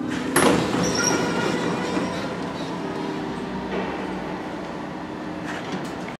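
A KONE hydraulic elevator car coming to a stop: its steady hum cuts off with a sudden loud clatter about half a second in, followed by the doors sliding open onto a noisy stretch of mixed sound.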